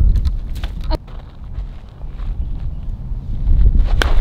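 Wind buffeting the microphone, with a few sharp clicks and rustles in the first second from dry desert shrub branches and footsteps on gravelly dirt. Right at the end, a golf club strikes the ball off hard desert dirt.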